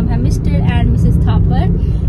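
A woman talking over the steady low rumble of a car's cabin.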